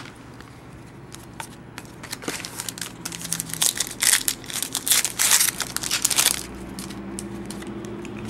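Foil wrapper of a trading-card pack being torn open and crumpled by hand: a run of crackling, crinkling rustles that builds up about two seconds in and stops about six seconds in.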